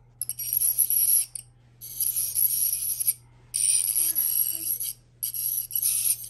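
Electric ultrasonic plaque remover with its vibrating scaler tip working against the teeth, making a high-pitched scraping buzz in four bursts of about a second each, with short pauses as the tip is lifted and moved.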